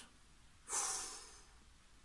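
A man breathing out once through the nose, starting just under a second in and fading over about a second.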